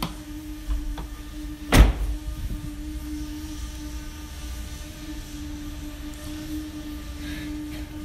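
Rear barn door of a 2016 Volkswagen Caddy van slammed shut once, a single loud bang about two seconds in, over a steady low hum.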